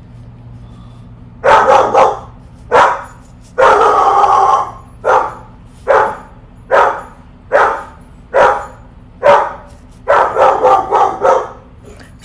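A dog barking repeatedly, about a dozen loud barks roughly a second apart, starting shortly after the beginning, one of them drawn out.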